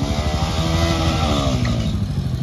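Motorcycle engines: one idling close by with a steady pulsing beat, while another motorcycle's engine note rises and then falls in pitch over about a second and a half.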